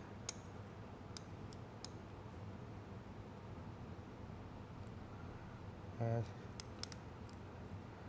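Faint, sparse metallic clicks of a magnet tool probing inside the trans brake valve bore of a TH400 transmission case, fishing for the spring-loaded valve: a few ticks in the first two seconds and a few more near the end.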